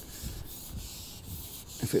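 Steady wind noise: a rushing hiss with an uneven low rumble of wind buffeting the microphone.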